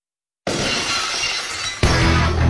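Glass shopfront shattering as a car crashes through it: a sudden loud crash of breaking glass about half a second in, after silence. Music with heavy bass comes in near the end.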